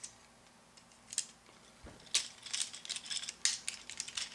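Small plastic clicks and light rattles from a Transformers Revenge of the Fallen Ramjet figure as its parts are handled and moved during transformation. The clicks begin about a second in, with a single low knock near the middle, and grow more frequent in the second half.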